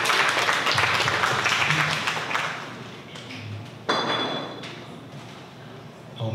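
Audience applauding, the clapping dying away over the first three seconds. Near four seconds in, a single sudden ringing ping that fades.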